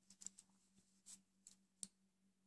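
A few faint, irregular clicks of metal circular knitting needles tapping together while a slipped stitch is passed over the next two stitches, the sharpest just before the end.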